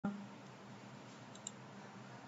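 A single computer mouse click about one and a half seconds in, right-clicking to open a menu, over a steady low hum and hiss from the recording microphone. A brief bump sounds as the recording starts.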